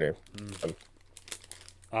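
A second or so of faint crinkling and clicking from something handled close to a microphone, between short bits of speech.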